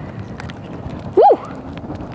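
A brief, loud, high yelp that rises and falls in pitch, a little over a second in, over a steady background of wind and water with faint scattered clicks.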